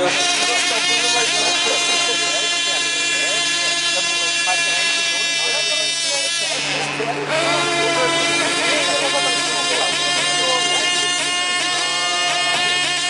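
High-revving 2.5 cc model diesel engine of an F2C team race model running at full speed. It starts abruptly, drops in pitch briefly about six and a half seconds in, then picks back up to its high whine.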